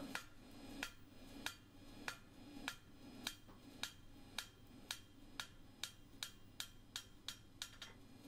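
Farrier's hammer giving a steel horseshoe on the anvil a steady run of light taps, about two a second and quickening near the end, as the toe clip is drawn out from the knocked-up lump.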